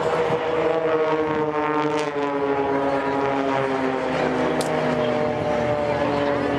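Propeller engines of a formation of small aerobatic planes passing overhead, a steady drone whose pitch slides slowly downward as they go by.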